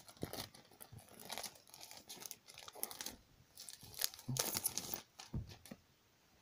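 Plastic packaging being torn and crinkled as a tablet box is opened and the tablet unwrapped: a run of short rustles and rips, busiest about four to five seconds in.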